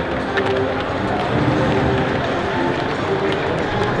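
Steady din of a football stadium crowd, many voices at once, with music playing underneath.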